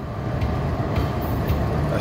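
Road and engine noise inside a car's cabin at highway speed: a steady low rumble. A hiss rises in the second half as an oncoming semi-trailer truck comes alongside.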